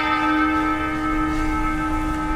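A single struck bell ringing on in one long, slowly fading tone.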